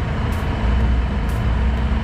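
A Yamaha Aerox V2 scooter's single-cylinder engine idling, a steady low rumble.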